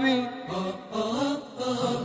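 Arabic nasheed chanted without instruments, in a softer stretch between sung lines, with wavering held vocal notes.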